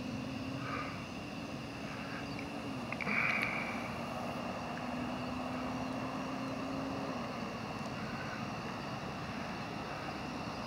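Steady hum of a distant engine, with a low steady tone that ends about seven seconds in. A short higher-pitched sound stands out about three seconds in.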